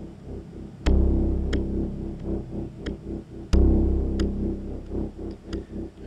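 Erica Synths DB-01 bass synthesizer playing a sequenced bass pattern through a Strymon Timeline delay pedal with LFO modulation on the repeats. Two loud low notes come in, about a second in and about halfway through, each ringing on in a long tail.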